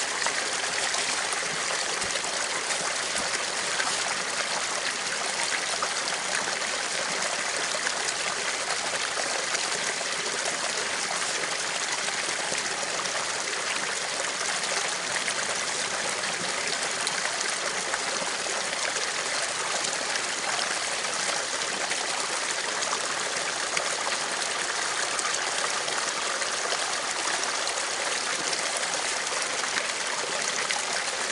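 Small creek trickling steadily over rocks in a short cascade.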